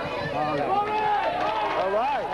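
Several people praying aloud in tongues at the same time, an overlapping babble of voices.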